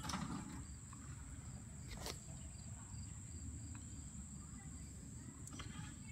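Faint steady high-pitched insect trill, with a single faint click about two seconds in.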